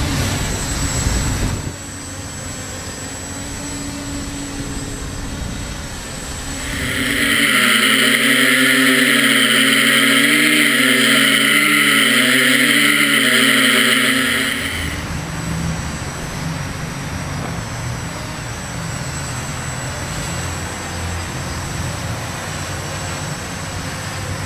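Quadcopter's brushless electric motors and propellers whirring in flight, several slightly different pitches wavering against each other as the motors speed up and slow down to hold it in the air. The whir is loudest from about 7 to 15 s in, then drops to a softer, steadier rushing sound.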